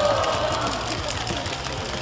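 Gym noise during a pickup basketball game: players' voices calling out over a steady low hum, with scattered short knocks from the court.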